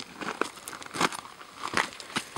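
Light rustling and crackling with a few sharp clicks scattered through, the handling and movement noise of a person turning and stepping through dry desert scrub.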